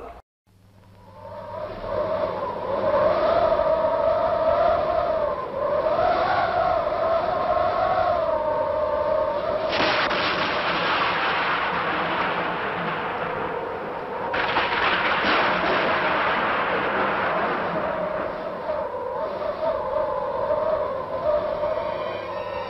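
Howling wind sound effect: a wavering, whistling howl that slowly rises and falls. About ten seconds in, a loud rush of gusting wind takes over for around four seconds, then the howl returns.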